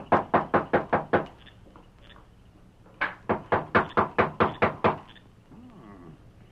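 Knocking on a door: a quick run of about eight raps, a pause of nearly two seconds, then a second, longer run of about ten raps.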